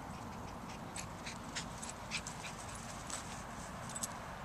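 Small Yorkie Bichon mix dog panting faintly after a sprint, over a low steady outdoor background with faint light ticks scattered through.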